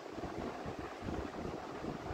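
Steady low background noise: faint room tone with a low rumble, in a pause between speech.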